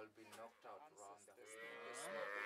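Faint lowing of cattle: one long, drawn-out moo begins about a second and a half in.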